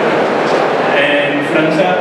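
A man's voice speaking from about a second in, over a loud, steady rushing noise that fills the poor-quality recording.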